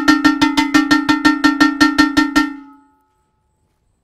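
Handheld metal gong (ogene) beaten rapidly with a wooden stick, about six even strokes a second on one ringing note. The beating stops about two and a half seconds in and the ring dies away.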